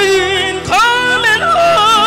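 A solo voice singing long held, wavering notes into a microphone over a PA, each note sliding up into pitch at its start; a new note begins about two-thirds of a second in.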